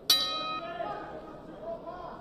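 Boxing ring bell struck once to start round one, a single ring that fades over about a second.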